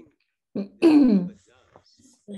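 A person clearing their throat: a short rasp about half a second in, then a louder voiced throat-clear about a second in that falls in pitch.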